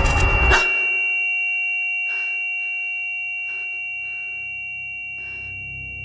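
Dark film score and sound design. A loud rushing swell cuts off about half a second in and leaves high ringing tones that slowly fade. Soft chime-like hits sound every second or so, and a low drone builds from about halfway.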